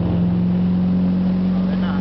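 Motorboat engine running at a steady pitch while towing, over the rushing wash of its wake.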